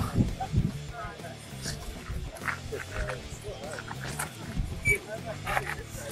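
Faint, scattered human voices and short vocal sounds, with a brief high squeak about five seconds in.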